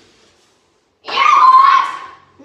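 After about a second of near silence, a single loud, high-pitched cry comes in about a second in and lasts under a second, holding a steady pitch before it fades.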